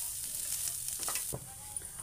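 Spiced potato-and-pea stuffing sizzling in a nonstick frying pan as a spatula stirs it. The sizzle drops away suddenly a little over a second in, with a single knock.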